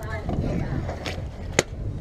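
Knocking and scraping on a wooden dock deck as a netted bowfin is tipped out of the landing net onto the boards, with one sharp slap about one and a half seconds in.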